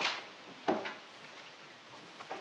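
A sharp wooden knock about two-thirds of a second in as household furniture is shifted, then faint room tone.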